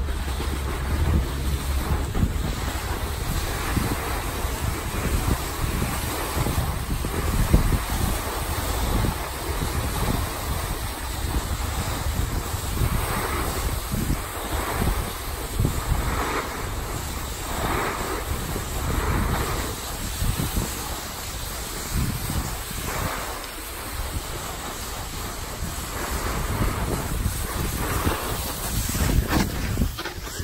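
Wind buffeting the microphone of a camera carried by a snowboarder riding downhill, over the hiss of the board sliding on packed snow. Through the middle stretch the board's edge scrapes in swells about once a second as it turns.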